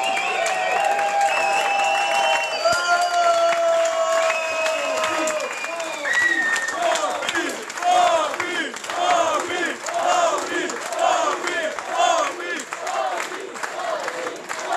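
Boxing crowd cheering and shouting in celebration of the winner: first long held calls, then from about halfway a rhythmic chant of short repeated calls, roughly two a second.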